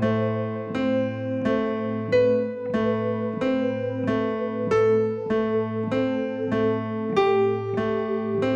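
Electronic keyboard played slowly: a repeating broken-chord figure in A minor, single notes struck about one and a half times a second over a held low bass note.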